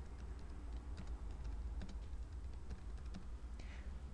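Faint keystrokes on a computer keyboard, a scattered run of light clicks as a word is typed, over a low steady hum.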